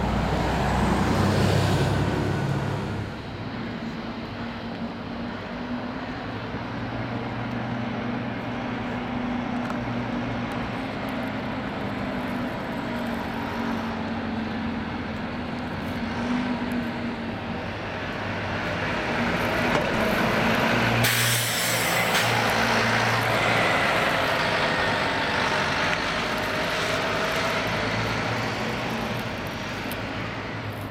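Diesel city buses running and pulling away: a single-decker passes close and loud in the first few seconds, then a double-decker's engine works harder as it moves off. A sudden hiss of air, typical of an air brake, cuts in about two-thirds of the way through.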